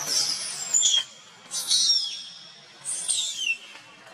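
Infant long-tailed macaque screaming in distress while its mother grapples it: three shrill, high calls, each sliding down in pitch.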